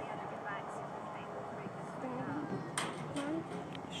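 Faint background chatter of spectators' voices at a ballgame, with one sharp click about three seconds in.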